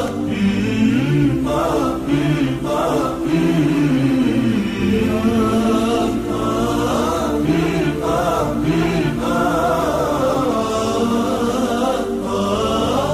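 Background vocal music: several voices chanting together in long, held and gliding notes.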